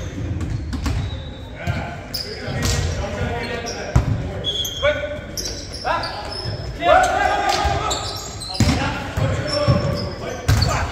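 Volleyball rally in an echoing gym: sharp slaps of the ball being hit, the loudest about four seconds in, short high sneaker squeaks on the court floor, and players shouting calls midway through.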